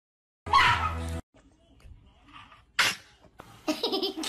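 A loud, short burst about half a second in. Near three seconds a cat gives a single sharp sneeze, then a person laughs in quick pulses toward the end.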